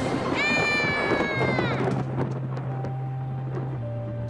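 A high, drawn-out cat-like yowl lasting about a second and a half, sagging in pitch at the end, over low background music.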